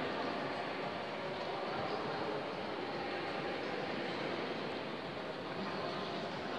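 Steady reverberant hubbub of a large domed hall: faint voices and room noise blur into an even, echoing wash.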